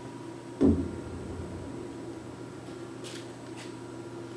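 Steady machine hum from the shop floor, with one dull knock about half a second in and two faint brushing sounds near the end.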